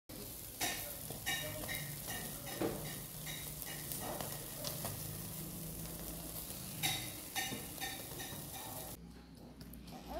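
Sardines sizzling over a charcoal brazier in a wire grill basket, a steady hiss with scattered crackles that falls away about nine seconds in.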